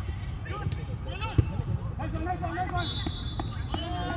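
Football players shouting across an artificial-turf pitch, with a ball struck hard about a second and a half in. Near the end a steady high whistle sounds for about a second.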